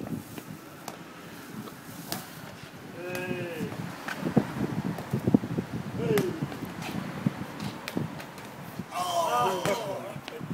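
A football being juggled and kicked, a run of short, irregular thuds of the ball on the foot, with men's voices calling out between the kicks, loudest near the end.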